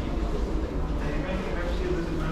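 Steady low rumble of restaurant room noise, with a faint murmur of background voices.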